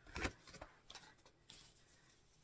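Handling noise as a paper cross-stitch pattern booklet is set aside: one brief soft thump near the start, then faint rustles and small clicks.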